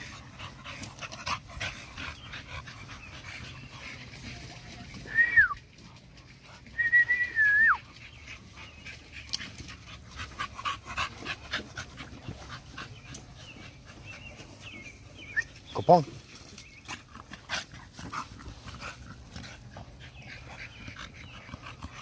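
American Bully dogs panting and snuffling at close range, with two short high-pitched whines that drop in pitch at the end, about five and seven seconds in.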